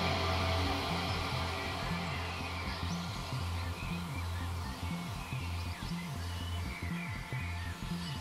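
Downtempo psybient electronic music in a quiet passage: a deep bass pulses steadily under a wash of sound that thins out, with small chirping squiggles high up from about three seconds in.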